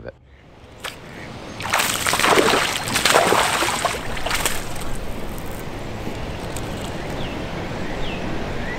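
Water splashing hard for about three seconds, starting a couple of seconds in, as a hooked largemouth bass thrashes at the surface. After that comes a steadier wash of lapping water.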